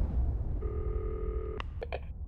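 A low rumble dies away, then a steady electronic tone, much like a telephone dial tone, sounds for about a second before cutting off into three sharp clicks, as of a set being switched over.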